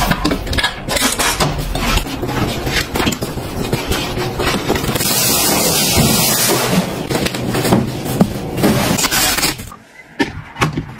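A quick run of handling noises: clicks, knocks and scrapes of household objects and cardboard packaging being moved, with a longer hissing rush about five seconds in.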